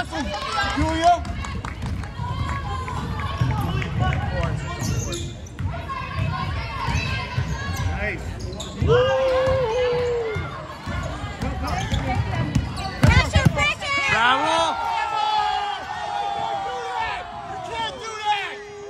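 A basketball bouncing on a hardwood gym floor during play, with a series of short knocks throughout, under shouting voices in a large gymnasium.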